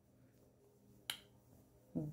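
A single sharp finger snap about a second in, with near silence around it.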